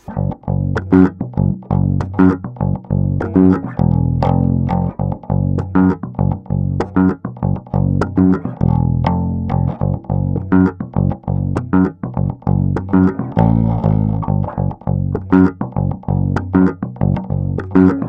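Five-string Spector Euro 5LE electric bass played through a GoliathFX IceDrive bass overdrive pedal, with the mids and tone turned up and the blend on full. A busy line of quickly plucked low notes, each note heard clearly and not overpowering the others.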